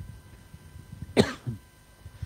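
A man coughing into his hand: one sharp cough a little past halfway, followed by a shorter, weaker one.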